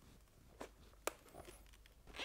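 Faint handling sounds from a helmet intercom speaker and its cable being pressed into place inside a motorcycle helmet: a few light clicks, the clearest about a second in.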